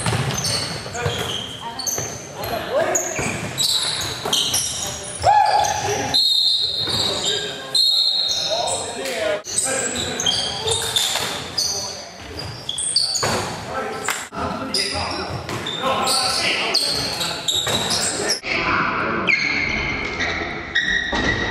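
Basketball game sound in a gym: a basketball bouncing on the hardwood floor amid players' shouts and short high squeaks, all echoing in the hall.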